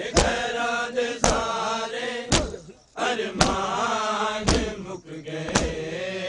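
A crowd of men chanting a noha in unison, with loud rhythmic chest-beating (matam) in time, about one sharp slap a second.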